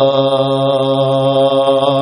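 Islamic devotional song in Malayalam: a singer holds one long, steady note.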